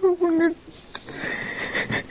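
A woman sobbing: a short, held cry in the first half second, then a long, breathy, wheezing breath.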